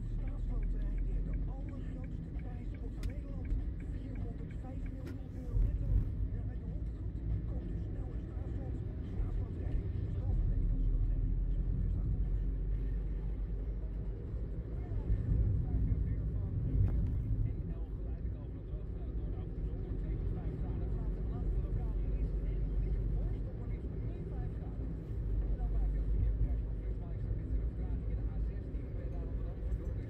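Steady low rumble of a car driving, engine and tyre noise heard from inside the cabin, swelling and easing as it speeds up and slows through town, with a voice faintly audible underneath.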